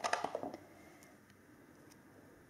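Brief rustling and a few light clicks of an adhesive nasal strip being handled in the fingers, in the first half second, then faint room tone.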